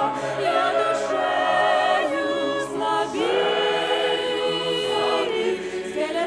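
A youth church choir singing a hymn in parts. About three seconds in, the voices settle on one long held chord that ends just past five seconds.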